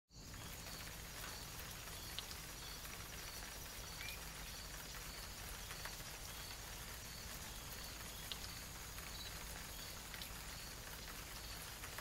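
Faint steady ambient hiss with a soft, high chirp repeating evenly about every 0.6 s and a few scattered light ticks.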